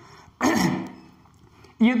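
A man clearing his throat once, a short burst about half a second in.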